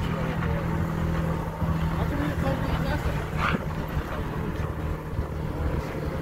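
Pickup truck's engine running steadily, with wind and tyre noise, as the truck drives along a dirt trail.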